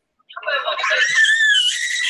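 Several people shrieking and laughing in high-pitched voices, starting after a short pause; one high, wavering cry stands out around the middle.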